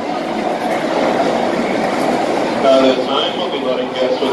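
Crowd murmur and shuffling of riders climbing out of roller coaster cars at the station platform. A nearby voice speaks over it in the last second or so.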